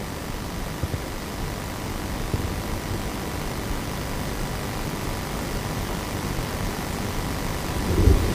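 Steady low rumble with hiss, studio room noise picked up by open microphones, with a faint steady hum.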